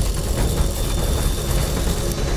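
Intro sting soundtrack under a logo animation: a steady, deep, engine-like rumble with faint held tones above it.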